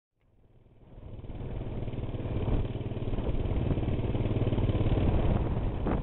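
A steady engine rumble, fading in from silence over the first second or so and then holding level.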